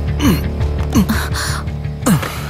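Tense film background music over a low sustained drone, with a few short, breathy gasps.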